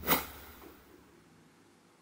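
Subscribe-button animation sound effect: one sharp click right at the start, fading out within about a second, then faint room tone.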